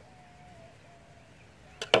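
Quiet background with a faint thin steady tone through the first half; near the end, a quick cluster of sharp knocks.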